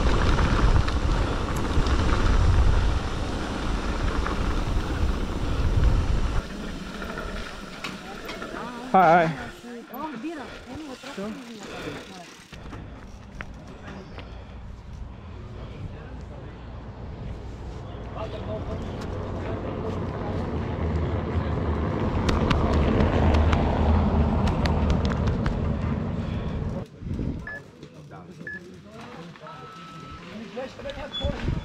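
A mountain bike rattling over a cobblestone road, with wind on the microphone, for the first six seconds. A short loud sound with a wavering pitch comes about nine seconds in. After that it is quieter, and a noise swells and fades in the second half.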